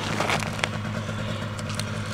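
A steady low hum runs throughout. Over it come a few small clicks and light splashes as a hand reaches into a water-filled ice-fishing hole to grab a fish.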